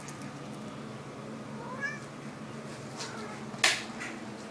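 House cat giving a short, rising meow about halfway through, with a fainter call a second later. Near the end comes a single sharp click, the loudest sound.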